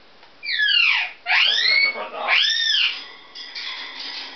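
African grey parrot giving three loud whistles in quick succession: the first falls steeply, the second rises and levels off, the third rises and falls. Softer, broken calls follow near the end.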